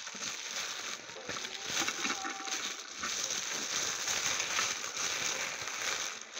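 Tissue paper wrapping being unfolded and handled, crinkling and rustling continuously.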